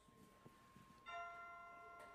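Quiet room tone, then about a second in a bell-like chord of several steady tones is struck and rings on, slowly fading.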